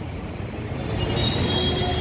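2022 Hyundai Tucson's electric power tailgate lifting open: a steady motor hum that grows slightly louder, with a thin high whine joining about a second in.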